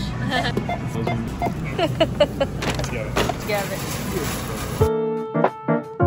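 Busy grocery-store background of voices and store music with small clatter at a self-checkout. About five seconds in, it cuts abruptly to a clean piano tune.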